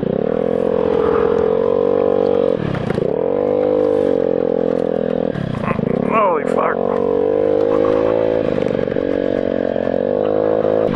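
Small motorcycle engine running under throttle while riding over rough ground. Its pitch dips and picks back up about three times, near 3 s, 6 s and 9 s, as the throttle is eased and reopened.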